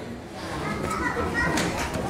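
Children's voices in the background, talking and calling out over a general murmur of voices.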